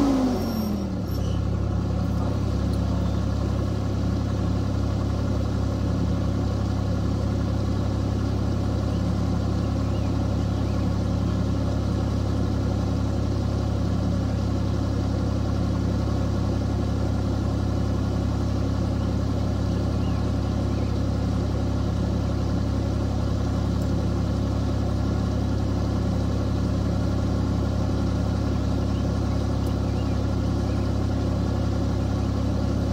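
Vermeer mini skid steer engine dropping from high revs to idle in the first second, then idling steadily.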